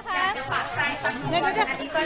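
Several people talking at once in a crowd, with a woman's voice nearest.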